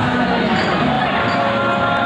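Loud, steady party din around a table: several voices and music or group singing mixed together, with some dull knocks.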